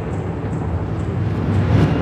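Bozdağ Film production-logo sound sting: a loud, dense rumble with a deep low end, swelling near the end.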